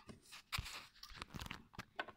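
Light clicks and scrapes of small plastic toy figures being handled and set down.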